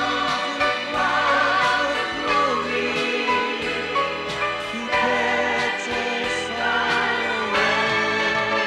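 A worship song: a group of voices singing together in long held notes over instrumental accompaniment.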